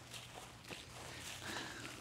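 Faint footsteps on grass, a few soft steps over quiet outdoor background.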